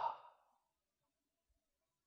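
A man's speech trails off in the first moment, then near silence.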